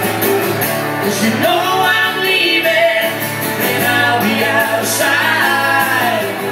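Live acoustic guitar playing with a singing voice, a small acoustic duo performing a song.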